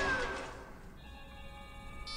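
Film soundtrack playing through the media center: a sound that fades down in the first second, then a steady electronic ringing tone sounding at several pitches at once.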